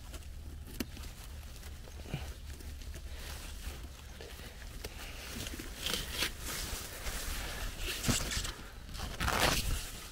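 Rustling of squash leaves and vines, with handling and cutting noises as a large squash is cut off its vine; the rustling grows louder near the end as the fruit is pulled free.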